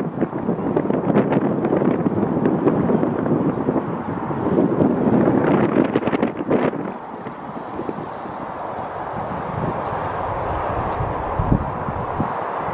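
Wind buffeting the camera microphone in gusts, easing to a lower, steadier rush about seven seconds in.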